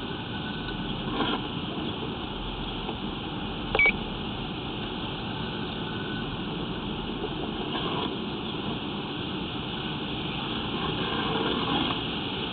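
Steady mechanical-sounding background hum and hiss, with one short high beep about four seconds in.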